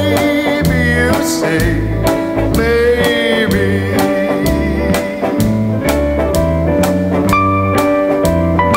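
Early-1960s British beat-group record playing: bass line, drum kit and electric guitar at a steady beat. A wavering melody line runs over the top during the first few seconds.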